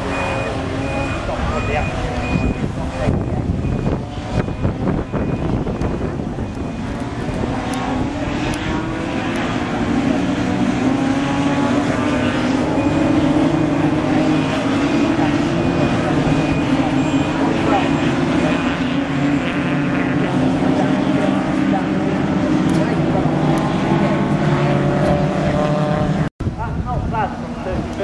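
Several BMW 3 Series race cars passing in a close pack, engines revving up and down through the corner and accelerating away. The engine noise builds to a steady drone in the second half.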